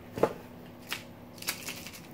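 A small plastic bag crinkling as it is handled, a few short sharp crackles, the loudest just after the start.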